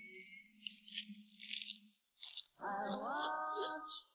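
Crisp crackling and rustling of fresh spring cabbage (bomdong) leaves being torn and folded by hand, a quick run of sharp crackles. Over the second half a held musical tone with one short upward slide comes in.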